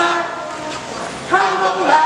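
A group of mixed voices singing together: a held note ends just after the start, there is a short quieter breath, and the singing comes back in strongly about a second and a third in.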